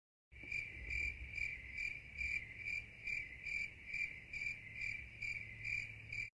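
A cricket singing: a steady high trill that swells and fades about twice a second, starting just after the beginning, over a faint low rumble.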